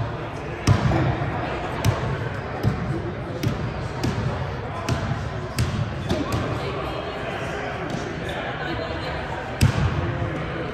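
A basketball bouncing on a hardwood gym floor: sharp thuds at uneven intervals of roughly a second, over the murmur of voices in a large gym.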